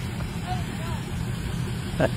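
A vehicle engine idling, a steady low rumble, with faint voices in the background.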